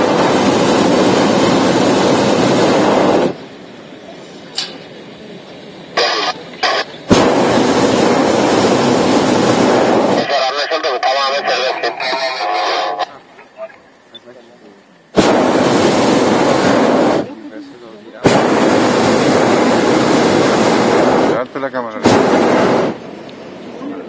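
Hot air balloon's propane burner firing overhead in a series of blasts, about five, most lasting two to three seconds, each starting and cutting off abruptly.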